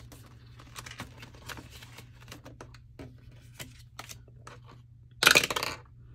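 Paper money being handled: soft rustles and light clicks as dollar bills are slid into a clear binder envelope pocket. Near the end comes a loud, rattling burst lasting under a second.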